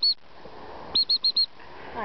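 A dog whistle blown in short pips at one high pitch: two right at the start, then four quick pips about a second in. It is the pip-pip signal for calling the dog back.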